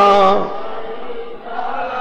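A man's sung line of a Punjabi naat ends on a held note about half a second in. A quieter, steady drone of backing voices carries on under it until the next line begins at the very end.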